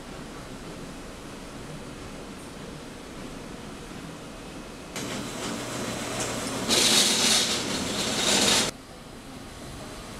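Steady machine noise in an embroidery workshop. A low hum joins about five seconds in, then a much louder hissing machine noise runs for about two seconds and cuts off suddenly.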